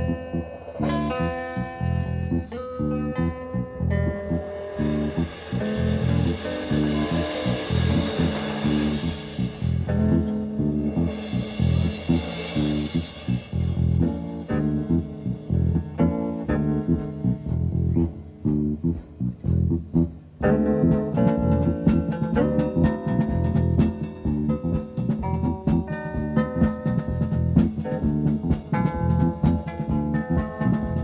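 Live trio playing a funky instrumental: electric guitar notes over bass guitar in a steady rhythm, with two stretches of hazy sustained sound in the first half.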